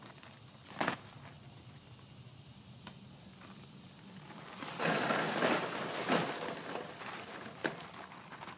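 A plastic bag of small white rock is handled, then emptied into a trench: a gravelly rattle and rustle for about a second and a half, about five seconds in, with single clicks before and after.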